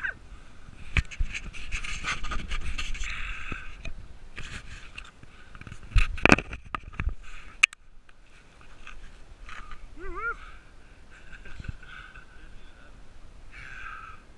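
Dog sled running over a snow trail, its runners scraping and the frame knocking, then a loud clatter of impacts about six seconds in as the sled tips over into the snow. About ten seconds in a dog gives a short whine.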